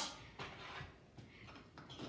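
Faint handling noises: a few soft knocks and rustles as a small container is worked open by hand.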